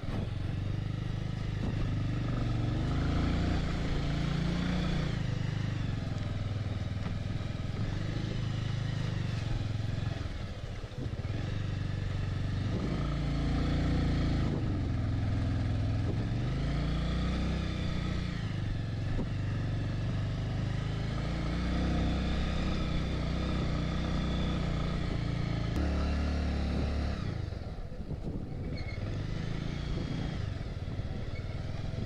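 Motorcycle engine running under load on a rough gravel road, its pitch rising and falling every few seconds as it speeds up and eases off, dropping away briefly twice.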